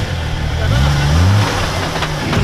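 An off-road buggy's engine revving, its pitch climbing from about half a second in and then holding, with voices in the background.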